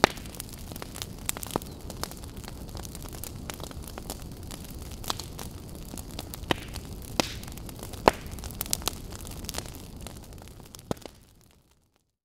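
Fire burning: a steady low rush with irregular sharp crackles and pops, fading out near the end.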